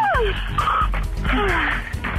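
A woman moaning and gasping over a telephone line in a few drawn-out falling sounds, not words, with background music underneath.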